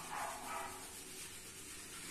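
Faint rubbing and squishing of hands scrubbing shampoo lather into wet hair. Two short, slightly louder sounds come in the first half-second.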